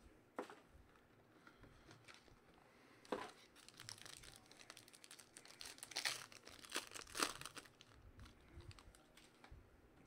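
Wrapper of a trading card pack being torn open and crinkled by hand: faint rustling with short crackles, busiest about six to seven seconds in.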